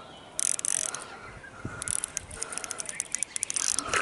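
Fishing reel clicking in rapid, irregular bursts while a hooked bass is played on a bent rod: a short burst about half a second in, then near-continuous ratcheting through most of the second half.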